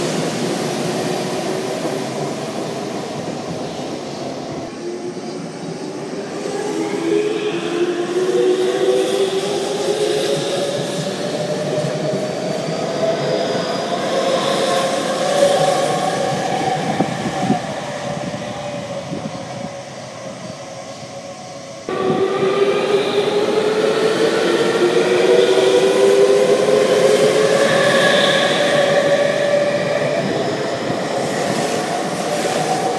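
Electric commuter trains at a platform, their traction motors whining and rising steadily in pitch as they accelerate away, with wheels rumbling on the rails. The sound is cut together from separate trains, jumping abruptly about four seconds in and again about two-thirds of the way through, where a fresh, louder accelerating whine begins.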